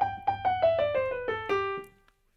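Digital piano playing a major scale in even, straight eighth notes, stepping down from the top note through an octave at about five notes a second, the last note dying away near the end. This is the plain straight-feel way of playing the scale, which the player calls boring.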